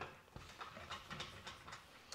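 A handheld whiteboard eraser wiping across a whiteboard in a few faint, short rubs.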